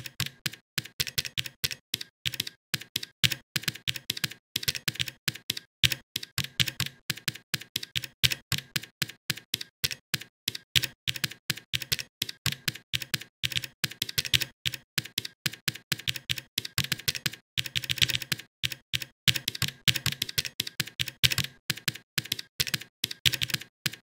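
Computer keyboard being typed on in quick, irregular runs of key clicks, broken now and then by short pauses.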